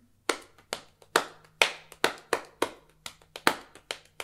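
Hand patting on a thigh in a run of even eighth notes, about two to three pats a second. Some pats are louder than others, accents that imply a swing groove.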